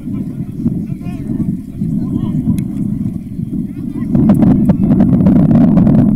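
Low, uneven rumble of wind buffeting the microphone, louder from about two-thirds of the way through, with faint voices of players shouting on the pitch.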